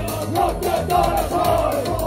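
Loud live electronic punk music with a steady driving beat, and several voices shouting the words together over it from about half a second in.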